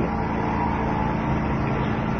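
Steady background noise with a faint hum, even throughout and with no distinct events.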